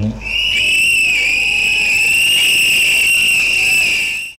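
A hand-held whistle blown in one long, high, steady blast with a slight waver in pitch.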